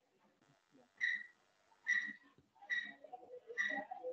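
Four faint, short, high chirps, evenly spaced a little under a second apart, heard over a video call.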